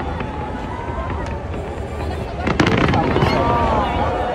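Fireworks going off, a continuous crackling with bangs, over the chatter and calls of a crowd. A louder cluster of bangs comes about two and a half seconds in.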